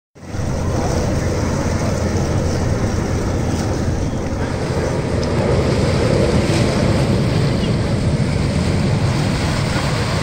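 Wind buffeting the microphone: a steady low rumble, with the hiss of lake water beneath it.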